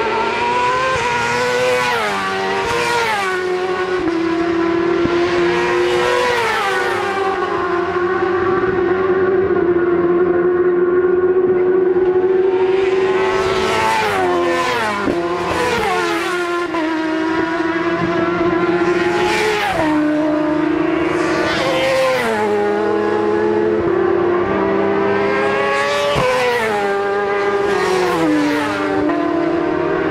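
Racing motorcycles at high revs on a road circuit, several passing in turn. Each engine note climbs as it comes on and then drops in pitch as it goes by.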